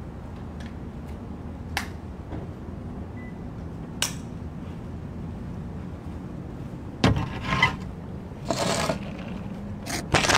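Steady low background rumble with two faint clicks, then two bursts of scraping and rustling, about seven and eight and a half seconds in, as a person sits down at a wicker table with a laptop.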